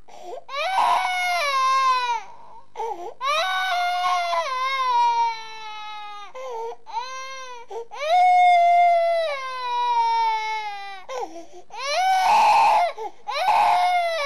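High-pitched crying wails: a run of long cries of one to two seconds each, each falling in pitch, with two harsher, noisier cries near the end.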